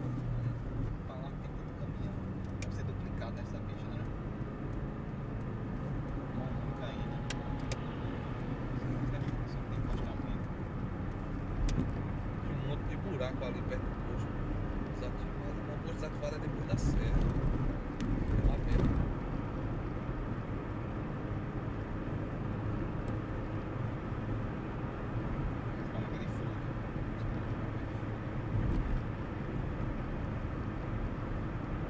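Car driving on a highway, heard from inside the cabin: a steady low rumble of engine and road noise, with scattered light clicks and a louder stretch a little past halfway.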